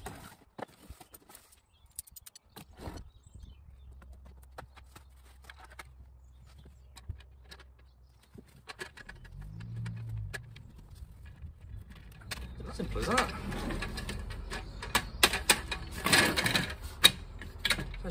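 Folding camp table being put together: its metal frame and slatted top clicking and rattling, with scattered clicks at first and a dense run of clatter in the last five seconds.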